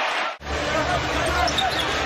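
Basketball game sound in the arena: crowd noise with a basketball being dribbled on the hardwood court. The sound drops out briefly just under half a second in, at an edit.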